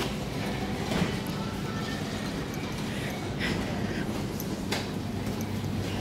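Supermarket shopping trolley rolling along a hard floor: a steady low rumble with a few faint clicks.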